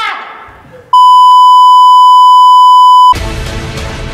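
A voice trailing off, then a loud, steady electronic beep at one pitch lasting about two seconds, cut off sharply as music starts.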